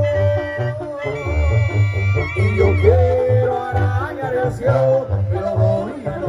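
Live banda music heard from the crowd: clarinets and brass hold long, wavering melody notes over a steady, pulsing bass beat.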